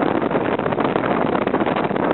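Steady rush of wind on the microphone of a moving motorbike, with the bike's engine running underneath.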